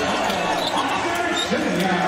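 Basketball bouncing on a hardwood court as it is dribbled up the floor, with voices in the arena.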